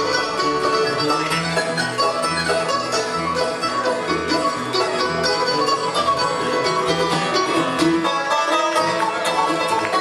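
Live acoustic bluegrass band playing an instrumental, the banjo rolling over strummed acoustic guitars and mandolin, with a steady low bass line at about two notes a second.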